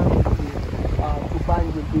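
Wind buffeting the microphone, a steady low rumble, with a voice heard briefly about a second in.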